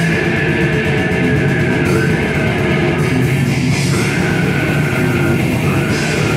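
Live death metal band playing at full volume: distorted electric guitars, bass and a drum kit in a dense, unbroken wall of sound, with growled vocals over it.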